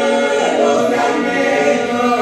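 A cappella Albanian folk song sung by a mixed group of men and women, with long held notes.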